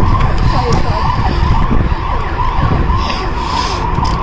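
Wind buffeting the phone's microphone, a loud, steady rumbling roar.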